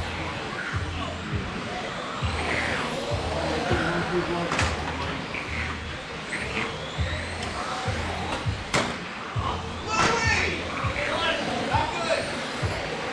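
Electric 1/10-scale RC touring cars racing around an indoor carpet track, their motors giving rising whines as they accelerate, with a few sharp knocks about four and a half, nine and ten seconds in. Background music and voices run underneath in the echoing hall.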